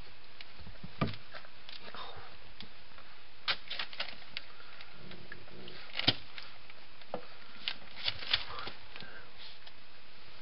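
Weimaraner puppies moving about on a hard floor: scattered light clicks and knocks of claws and paws, a handful of them, the loudest about six seconds in.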